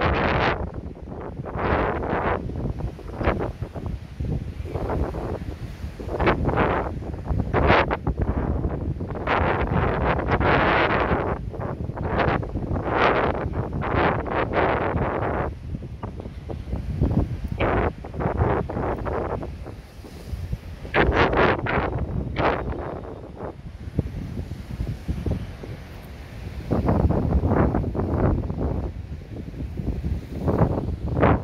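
Wind buffeting the microphone in irregular gusts, a rumbling noise that surges and drops every second or two.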